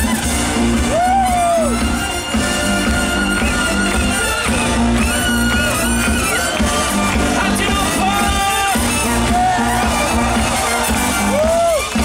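A brass band playing live and loud: sousaphone bass line, saxophones and trumpet over a marching bass drum and snare drum with cymbal, with no vocals.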